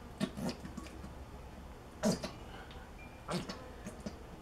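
Plastic squeeze bottle of barbecue sauce being squirted onto ribs in several short, sputtering squirts with air spitting through the nozzle.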